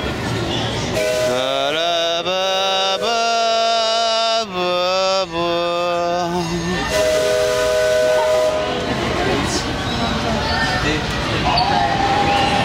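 Riverboat's steam whistle blowing as the boat sets off. The first long blast slides up at the start, then holds and steps down in pitch a couple of times over about six seconds. A second, shorter steady blast comes about a second later.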